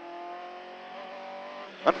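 Rally car's engine heard from inside the cabin, running at a steady high note under load, with a slight dip in pitch about a second in.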